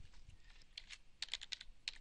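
Faint computer keyboard keystrokes: a quick, uneven run of about eight light clicks as a short search word is typed.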